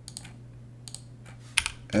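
Computer keyboard keystrokes: a few scattered taps, then a quick burst of keys near the end.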